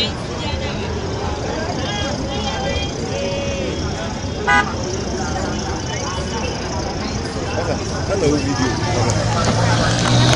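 Busy road-junction traffic and crowd noise, with vehicles running and people talking. A car horn gives one short toot about four and a half seconds in.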